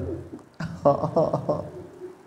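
A man's voice, choked with weeping, breaking off, then a few short, broken, quavering cries from about half a second in, close to the microphone.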